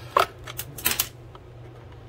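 A handful of sharp clicks and taps in the first second or so as the flex drive cable in its clear Teflon liner is pulled out of the fibreglass RC boat hull.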